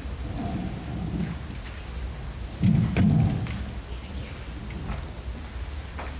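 Microphone handling noise as a microphone is passed from one speaker to the next: low rumbling and dull bumps, loudest in one heavy thump-and-rumble about two and a half to three seconds in.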